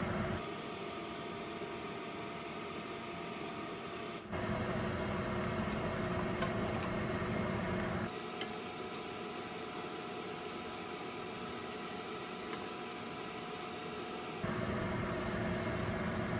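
Steady machine hum with several fixed tones over a low rumble. The rumble drops out and comes back abruptly about 4 seconds, 8 seconds and 14 seconds in.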